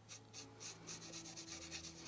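Stiff, dry paintbrush rubbing paint onto the edge of a gilded tray rim: quick, faint bristle strokes, several a second.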